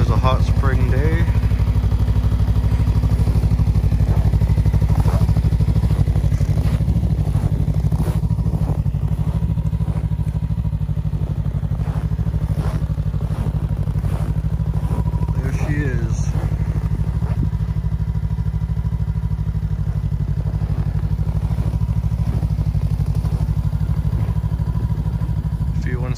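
Rotax 600 ACE three-cylinder four-stroke engine of a 2021 Ski-Doo Tundra LT snowmobile idling steadily in deep cold, its engine pre-warmed with a block heater.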